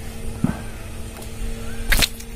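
A steady low motor hum runs under light handling noises, with one sharp click just before the end.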